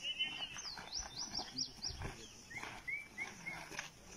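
Birds calling in the surrounding trees: a quick series of high, rising chirps, about five a second, followed a little later by a few shorter, lower chirps.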